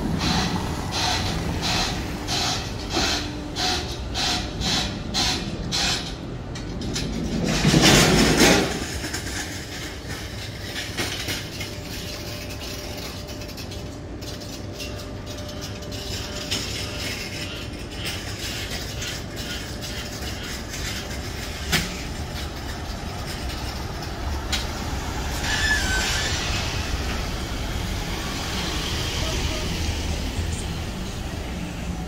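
Urban street ambience while walking. Footsteps on paving come about two a second for the first six seconds, and a brief loud burst of noise comes about eight seconds in. After that there is a steady low traffic rumble with one sharp click.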